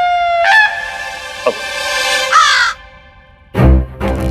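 Comic background-music sting: a nasal, reedy high note that slides up, holds for about two seconds and then bends away, followed after a short pause by low drum hits near the end.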